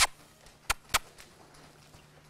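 Three short, sharp clicks, the last two a quarter second apart, over a faint steady low hum.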